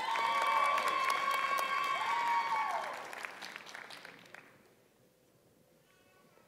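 Audience clapping and cheering for a graduate crossing the stage, with a long steady horn-like tone held over it for about three seconds. The applause dies away about four to five seconds in.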